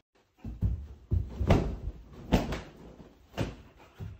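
A house door slammed hard, a series of heavy bangs and thuds, the loudest about one and a half and two and a half seconds in.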